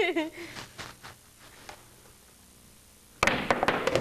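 Pool trick shot: about three seconds in, a cue strikes the cue ball sharply, followed at once by a quick run of hard clacks as the billiard balls collide.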